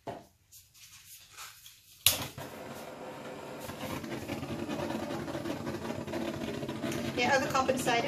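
Handheld butane torch lit with a sharp click about two seconds in, then burning with a steady hiss as it is played over wet acrylic pouring paint to bring up cells. A woman's voice starts near the end.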